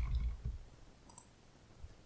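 A few faint, short clicks of a computer keyboard and mouse during code editing, after a low muffled thump at the start.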